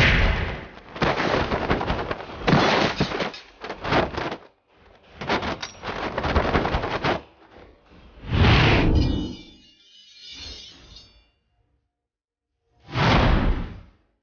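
Film soundtrack effects: a run of loud whooshes, booms and thuds. They die away after about eleven seconds, and one last loud whoosh comes near the end and cuts off suddenly.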